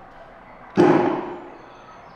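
Arcade shooting-gallery rifle firing once: a single sharp gunshot sound effect about three quarters of a second in, dying away over about half a second.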